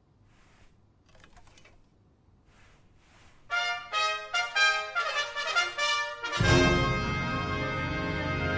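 A school wind band starts playing: after a few faint rustles, trumpets play a run of short, separate notes from about three and a half seconds in, and the full band comes in loudly with low brass about six and a half seconds in.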